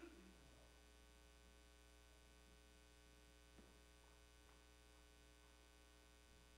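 Near silence with a steady electrical mains hum, and a faint tap about three and a half seconds in.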